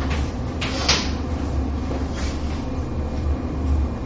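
Steady low room hum, with a sharp tap of chalk on a blackboard about a second in and a fainter tap a second later.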